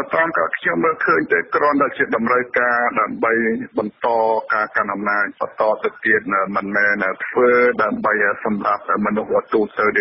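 Continuous speech: a Khmer news voice reading without pause, with a narrow, radio-like sound.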